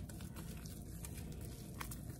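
Faint, soft handling sounds of bread dough being squeezed and shaped by hand over quiet room tone, with a small tick near the end.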